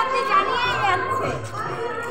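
A young child's high voice calling out and chattering while playing, loudest in the first second and fading after.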